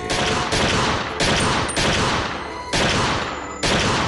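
A string of gunshots fired in quick succession: six shots about half a second to a second apart, each trailing off in a ringing decay.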